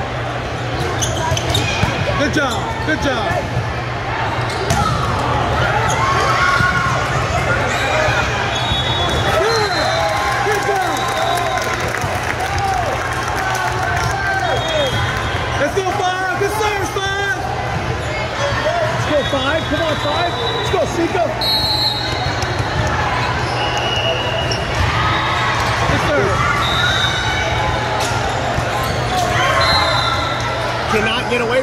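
Indoor volleyball gym ambience: continuous chatter and calls from players and spectators, with volleyballs being hit and bouncing on the court floor. A steady low hum runs underneath, and short high-pitched chirps come every so often.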